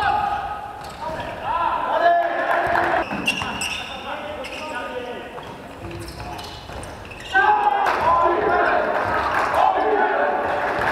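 Live sound of an indoor basketball game: the ball bouncing on the hardwood-style gym floor, short sneaker squeaks, and players' voices, echoing in a large sports hall. It gets louder suddenly about seven seconds in.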